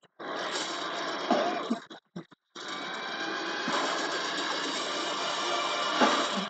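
Film trailer soundtrack: a dense, loud wash of music and sound effects. It cuts out briefly about two seconds in, then swells back.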